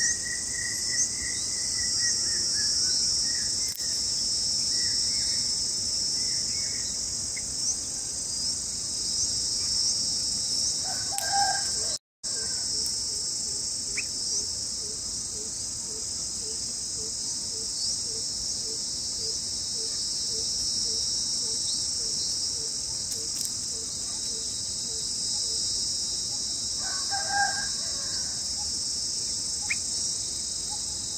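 Steady, shrill chorus of crickets, with a rooster crowing faintly about eleven seconds in and again near the end. A soft, even pipping about twice a second runs through the middle, and the sound drops out for an instant about twelve seconds in.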